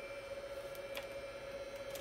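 Steady running hum of a network switch's cooling fans, with a constant mid-pitched tone and a few faint, short clicks, one of them about a second in.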